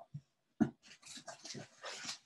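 A single thump about half a second in, then a run of irregular rustles as tissue paper is handled inside a cardboard box.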